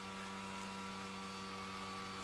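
Steady electrical hum with several fixed pitches, unchanging throughout.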